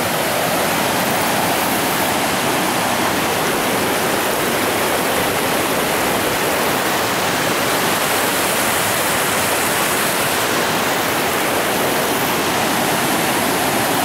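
River water spilling over an old low concrete dam and rushing through rocky shoals: a loud, steady rush of white water.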